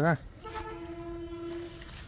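A horn sounds one long steady blast about half a second in, holding a single unchanging pitch for about a second and a half before cutting off.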